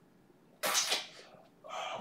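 A person's sudden, noisy burst of breath a little over half a second in, dying away within about half a second.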